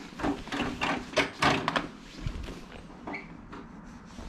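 A quick run of knocks and clunks with cloth rustling, bunched in the first two seconds and then quieter: the handheld camera bumping and rubbing against clothing and the motorcycle as a passenger settles onto the pillion seat.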